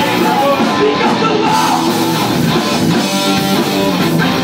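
Live rock band playing loudly, guitar prominent.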